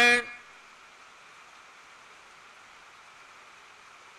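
A man's chanting voice ends on a held note just after the start, then a pause with only a steady faint hiss of background noise.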